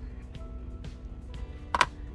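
Quiet background music, with one sharp clack near the end as a lighter is set down on a plastic cutting mat.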